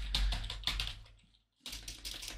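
Typing on a computer keyboard: a quick run of keystrokes, a short pause just after a second in, then more keys near the end.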